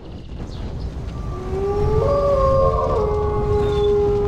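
A wolf howl: one long call that starts about a second in, rises in pitch, then is held steadily, over a low rumble.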